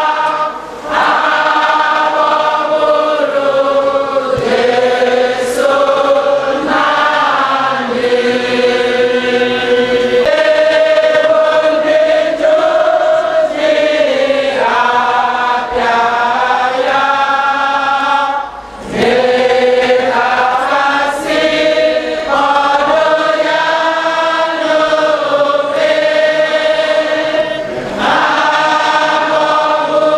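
A large crowd singing a slow hymn in unison, with long held notes. The singing breaks briefly twice for breath, about a second in and again near the middle.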